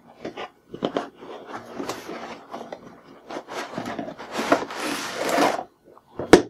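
Cardboard retail box being opened by hand, with a moulded pulp packing tray being slid out of it. The cardboard and pulp rub and scrape, with scattered small taps. The rubbing is loudest and densest from about four to five and a half seconds in.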